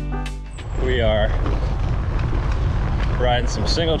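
Background music cuts off in the first half-second, then a steady low rumble of wind and riding noise on a bicycle-mounted camera's microphone, with a man's voice speaking briefly about a second in and again near the end.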